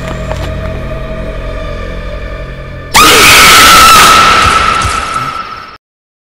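Soundtrack music with a steady low drone, then about three seconds in a sudden, very loud scream that sweeps up in pitch and is held high for nearly three seconds before cutting off abruptly.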